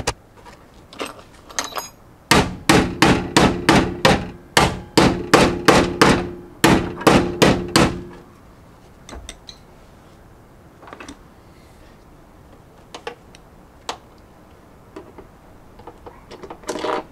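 Hammer blows on sheet metal in a car's engine bay: a fast run of about twenty ringing metallic strikes, three or four a second, that starts a couple of seconds in and stops about halfway through. The panel is being beaten in to clear the master cylinder. A few light taps follow.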